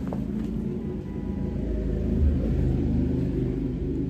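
A low rumble, like an engine running, that swells somewhat about halfway through and then eases.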